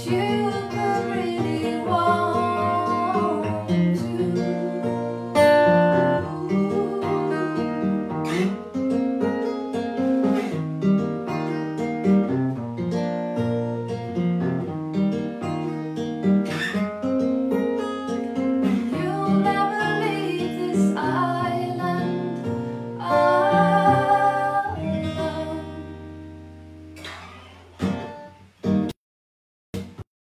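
Acoustic guitar accompanying a woman singing. Near the end the song closes on a held guitar chord that rings out and fades away.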